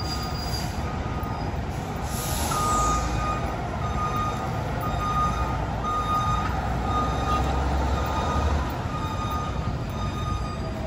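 Chicago Fire Department heavy rescue squad truck reversing: its backup alarm beeps about once a second over the low rumble of its idling diesel engine. There is a short hiss of air about two seconds in, just before the beeping starts.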